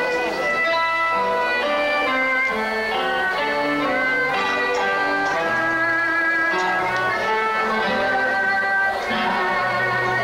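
A live band plays an instrumental passage. Acoustic guitar strumming and a moving bass line sit under a melody of long held notes.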